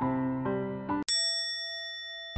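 Background keyboard music with sustained notes changing about every half second. About a second in it is cut off by a single bright bell-like ding, a chime sound effect that rings on steadily.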